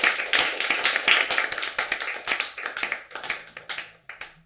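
Small audience applauding, the clapping thinning out and dying away near the end.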